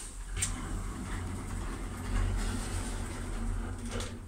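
thyssenkrupp passenger lift's sliding car doors closing: a click about half a second in, then a steady low hum of the door operator as the doors run shut.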